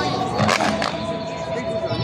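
Tai chi fans being snapped open, a quick pair of sharp snaps a little under a second in, over background music with a held note and chatter.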